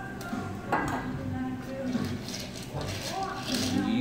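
A light metallic clink about a second in, as a bar tool knocks against a steel cocktail mixing tin, over a background of voices and music.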